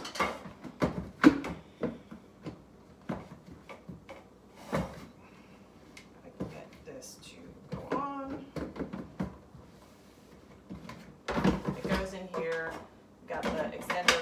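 Plastic parts of an electric grain mill being handled and fitted together: scattered clicks and knocks of the flour canister and lid, the sharpest a little over a second in. The mill's motor is not running.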